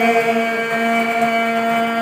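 Women's voices singing a traditional song together in unison, holding one long steady note.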